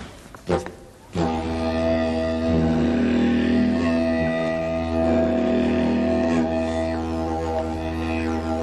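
Didgeridoo played with a steady low drone, starting about a second in, its overtones shifting now and then as the player changes his mouth shape.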